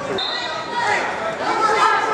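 A referee's whistle: one short, steady blast about a quarter of a second in, starting the wrestlers from the referee's position. Spectators shout and chatter around it, echoing in a gym.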